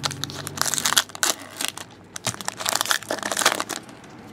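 Foil wrappers of 2014-15 Fleer Showcase Hockey card packs crinkling, in two bouts of crackling, as a pack is handled and opened.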